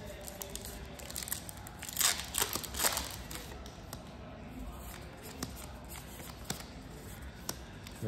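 Yu-Gi-Oh! trading cards being handled and sorted by hand, with light clicks of card against card and two brief rustling swishes about two and three seconds in.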